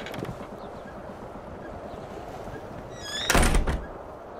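A wooden door slamming shut with a heavy thud about three seconds in, just after a short rising squeak, over a steady hiss of background noise.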